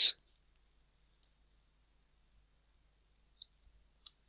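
A few isolated light clicks, about two seconds apart, from a computer mouse and keyboard being used to edit code.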